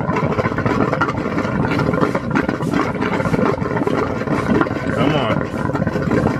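Water from the just-restarted aquaponics pump flowing into the fish tank through a PVC inlet elbow, a steady rushing churn. A voice is heard briefly about five seconds in.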